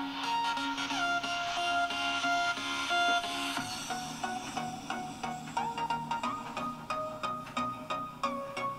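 Music played from a phone through a home-built TDA2030 amplifier on veroboard into a small loudspeaker. A melody with a swell in the treble builds over the first few seconds, then a steady beat comes in about halfway.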